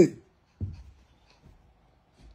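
The end of a man's shout of "hey", then about half a second later a short dull thump that fades quickly, followed by faint rustling and handling noise.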